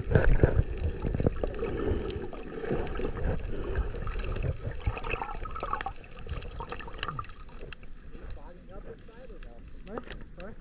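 Underwater sound from a submerged camera: muffled rushing and gurgling of water around the housing, with a loud low surge in the first second, then quieter with scattered clicks.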